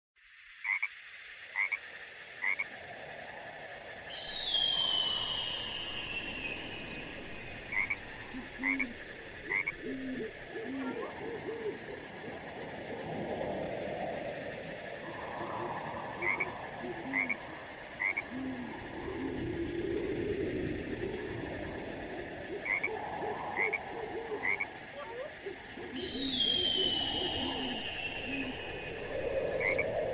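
Nature ambience of frogs croaking, a dense chorus of short low croaks mixed with quick high chirps, over steady high-pitched tones. A falling whistled call comes twice, about 22 seconds apart, each time with a short high buzz, as in a looped ambience track.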